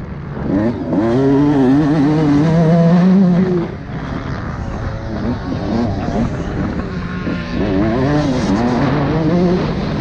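Motocross bike engine revving hard while being ridden, heard from a helmet-mounted camera with wind noise. The revs climb for about the first three and a half seconds, drop off, then rise and fall again and again.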